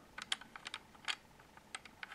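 Faint, irregular plastic clicks and taps from fingers handling the plastic front hitch of a 1:32 scale Siku model tractor. There are about six ticks in the first second and a couple more near the end.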